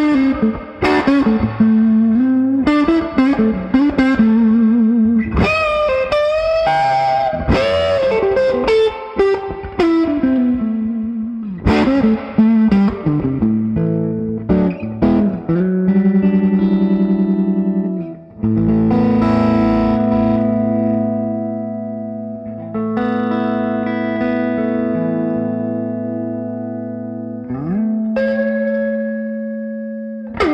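Electric guitar played through a B.G. Harding silicon fuzz pedal prototype into a Fender Vibroverb amp, giving a thick, sustained fuzz tone. It opens with quick lead phrases full of string bends and vibrato, then moves to held chords that ring out and slowly fade, with a slide up near the end.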